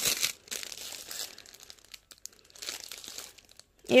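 Clear plastic packaging on stacked nighties crinkling under a hand pressing and brushing over the packs, in a few crackly bursts with quieter gaps between.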